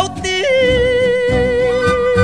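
Ranchera music with mariachi accompaniment: a male falsetto voice breaks upward about half a second in and holds a long high note with a gentle vibrato over a rhythmic bass and guitar backing.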